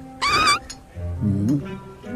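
Background film music with a short, high, wavering squeal about a quarter second in, then a low vocal groan that rises in pitch near the middle.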